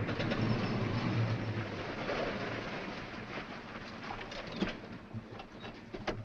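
A car running and rolling to a halt: steady engine and road noise that fades gradually, with a few light clicks near the end.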